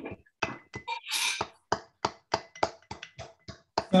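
Wooden spoon used in place of a muddler, bashing South Side ingredients such as mint and lime in a glass: a fast run of hard taps, about six a second, with a short scraping rustle about a second in.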